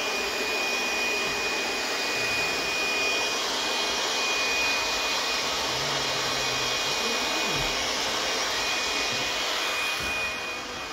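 Steady rushing of a motor-driven blower, with a thin high whine held at one pitch.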